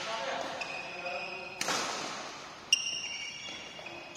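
A badminton rally in a large echoing hall: sharp racket strikes on the shuttlecock, one about a second and a half in and a louder one near three seconds with a brief high ringing ping, over sneaker squeaks and distant voices from nearby courts.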